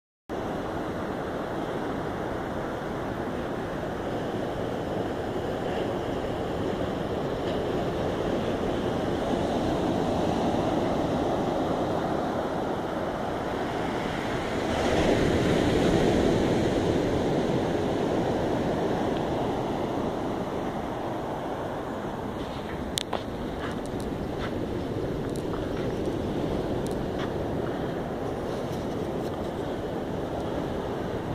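Ocean surf breaking on a beach, a steady wash that swells about ten and again about fifteen seconds in. A few light clicks come in the last several seconds.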